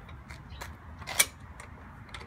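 Folding tubular steel wheelchair push handles being worked at their hinges: a few light metal clicks, then one sharp click about a second in, over a low background rumble.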